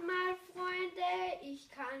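A child's voice in a drawn-out sing-song, holding long notes and stepping down in pitch about one and a half seconds in, then starting the words "Ich kann".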